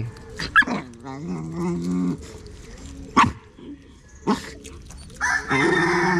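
Dog barking: three short, sharp barks spread across a few seconds, with drawn-out lower vocal sounds between them.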